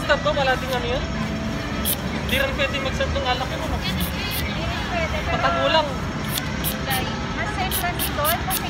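Several people's voices chattering over one another, over a steady low rumble of city traffic.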